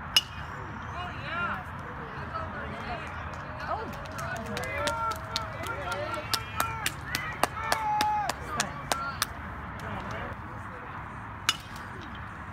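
A pitched baseball smacks into the catcher's leather mitt with a sharp pop just after the start, and again shortly before the end. In between, a quick run of sharp claps mixes with short shouted calls from players and spectators.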